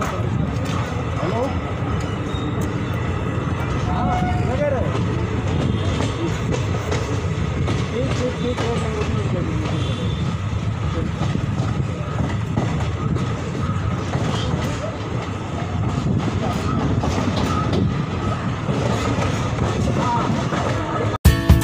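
Railway coach running on the track, heard from its open side: a steady low rumble of wheels on rails with some clatter.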